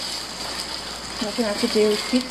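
Diced hot dogs, sausage and ham sizzling steadily in a frying pan as they are stirred with a plastic spatula.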